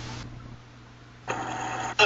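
Steady low hum with even hiss, the background noise of a recording between edited speech clips. It dips quieter in the middle and grows louder again near the end.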